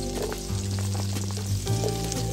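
Ginger and freshly added sliced garlic sizzling steadily in hot cooking oil in a wok, with a few short scrapes as the garlic is pushed in. Steady low notes of background music run underneath.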